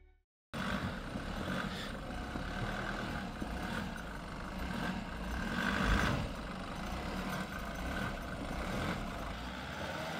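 Nissan Patrol Y61 SUV engine running at low revs as it crawls slowly through a deep cross-axle rut, heard from outside the vehicle. A brief thump about six seconds in.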